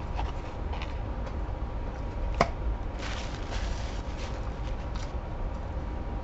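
A man chewing a mouthful of chicken Big Mac, soft wet mouth noises over a steady low room hum, with one sharp click about two and a half seconds in and a short crackle just after.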